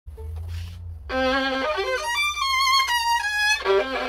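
Solo violin played with the bow: after a low rumble in the first second, a melody of bowed notes with vibrato starts about a second in and runs on.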